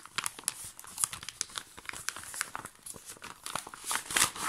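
Clear plastic sleeve of a cross-stitch kit crinkling as it is pulled open and its paper contents slide out: a rapid, uneven run of crackles and rustles.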